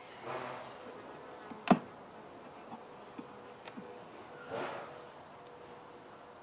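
A wooden hive frame is worked out of a nuc box with a metal hive tool: two short scraping rustles, and one sharp crack or knock just under two seconds in, the loudest sound. Honey bees buzz faintly throughout.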